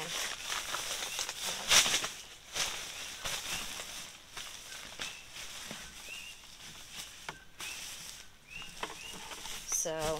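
Thin plastic kitchen trash bag rustling and crinkling as it is handled and fitted into a plastic 5-gallon bucket, loudest about two seconds in.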